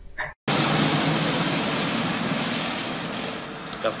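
Steady engine and traffic noise with a low hum from an old black-and-white film's soundtrack, as a car waits in traffic. It starts abruptly after a moment of silence just under half a second in, and a man begins speaking near the end.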